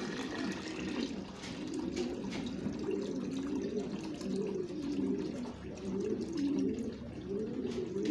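Fenugreek brew being poured from a pot into a bucket of water, the seeds held back at the rim: a steady splashing pour that foams the water.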